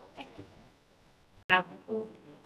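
Faint background voices of people talking, with one sharp click about one and a half seconds in, followed at once by a brief voice.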